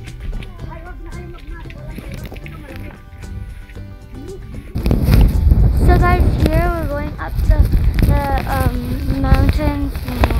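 Background music plays for the first five seconds or so. Then loud wind starts buffeting the phone's microphone, with a person's voice heard over it.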